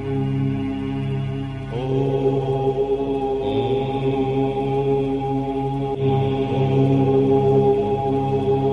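Om chanting: voices holding a long, sustained 'Om' over a steady drone. Fresh voices slide up into the chord about two seconds in, and again midway.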